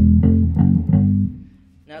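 Electric bass played fingerstyle: a quick chromatic fill, plucked notes climbing a semitone at a time from E through F and F sharp into G, the last note ringing and dying away about a second and a half in.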